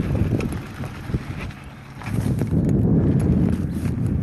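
Wind buffeting a phone microphone on a moving mountain bike: a loud low rumble with a few small clicks and rattles. It eases about a second and a half in, then picks up again.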